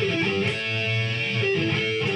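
Overdriven electric guitar playing a two-note double stop and bending it, the notes held and ringing.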